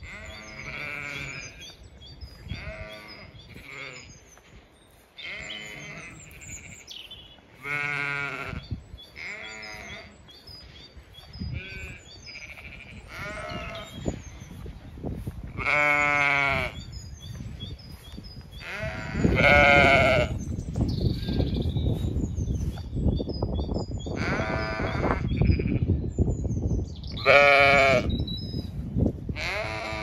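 Zwartbles ewes and lambs bleating again and again, several calls loud and close, with small bird chirps of the dawn chorus behind. A low rushing noise joins about two-thirds of the way through.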